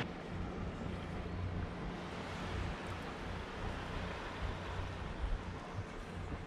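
Wind buffeting the microphone with an uneven low rumble, over a steady hiss of breeze and water.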